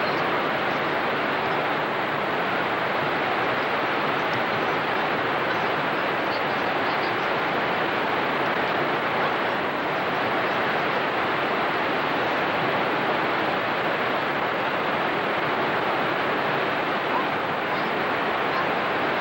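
Niagara Falls pouring: a steady, even rush of falling water that never changes in level.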